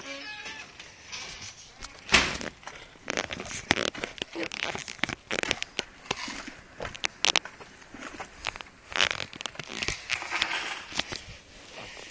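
Irregular rustling, scraping and sharp knocks, the loudest about two seconds in, with no engine running.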